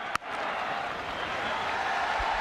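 Cricket stadium crowd noise, a steady din of cheering, with one sharp click just after the start.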